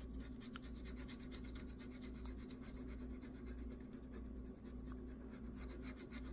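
Scratching the coating off a scratch-off lottery ticket in quick, repeated strokes, faint and steady.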